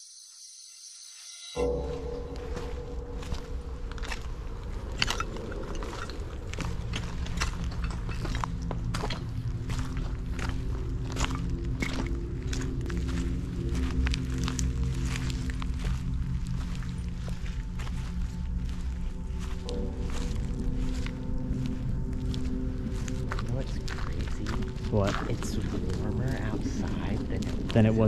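Footsteps crunching through dry leaf litter and undergrowth, with a steady low drone underneath. It begins suddenly a second or two in, after a brief quiet stretch.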